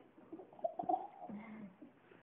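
Baby making a few soft cooing sounds, then a short low hum.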